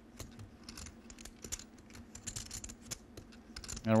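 Clay poker chips clicking together as they are handled at the table: many light, quick, irregular clicks.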